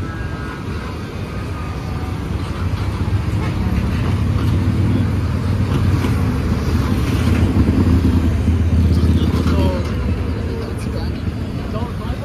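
City street traffic at a crossing: cars and a motor scooter driving past, the low engine and tyre rumble building to its loudest about eight seconds in and then easing off.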